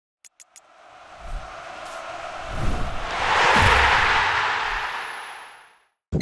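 Logo ident sound effect: three quick clicks, then a whooshing swell that builds for about three seconds and fades away, with a low rumble underneath.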